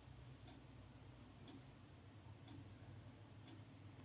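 Faint ticking of a clock sound effect, about two ticks a second, marking a countdown timer.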